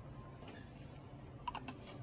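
A quick cluster of light clicks about one and a half seconds in, over a steady low hum.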